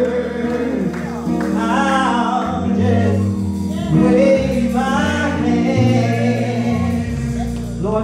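Gospel praise singing: a woman's amplified voice leads, with other voices joining in, over held instrumental chords that change every second or two.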